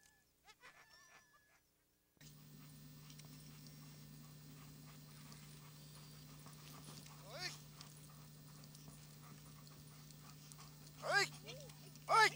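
Sled dogs whining faintly. Then, after a sudden steady low hum starts, a few loud cries that fall in pitch, one mid-way and two near the end.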